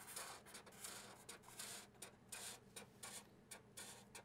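Faint scratching of Sharpie markers on paper, a quick irregular run of short strokes as zigzag lines are drawn.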